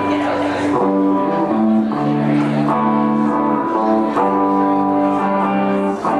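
Live band music led by guitar, sustained chords changing about once a second.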